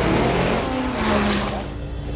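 A race car engine going by, its pitch falling as it passes, over background music.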